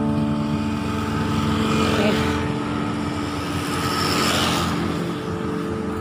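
Street traffic: the noise of a passing vehicle swells and fades, loudest about four seconds in, over steady sustained background tones.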